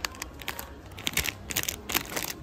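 Soft plastic packet of wet wipes crinkling as it is handled and put back on the shelf: a string of irregular crackles that grow thicker in the second half.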